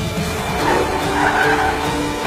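Car tyres skidding as a BMW coupe slides to a stop. The squeal builds about half a second in and fades just before the end, over rock music.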